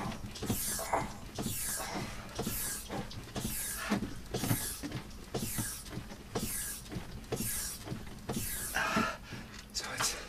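Upright rowing machine with a hydraulic shock worked hard with one leg at about one stroke a second: a sharp hiss of forced breath and a knock from the machine's frame on each push.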